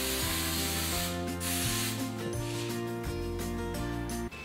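Aerosol hairspray hissing in one spray of about a second and a half onto a clip-in hair extension, setting the hair so the curl will hold, over steady background music.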